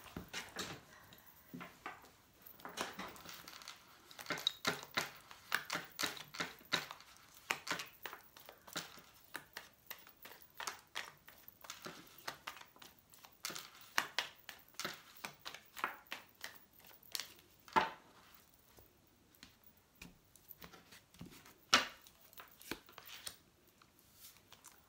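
A deck of baralho cigano cards being shuffled by hand: a rapid run of papery flicks and slaps as the cards slide against each other, thinning out later, with a few sharper snaps near the end.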